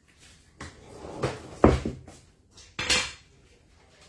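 Several separate knocks and clatters of a phone being handled and repositioned. The loudest comes a little before halfway and another near three seconds.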